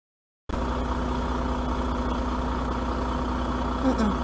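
Silence for about half a second, then a vehicle engine idling with a steady, even drone and hum.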